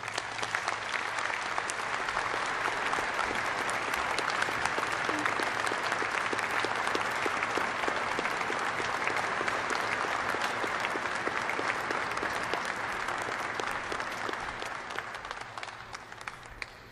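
Audience applauding: a dense patter of many hands clapping that starts suddenly and tapers off near the end.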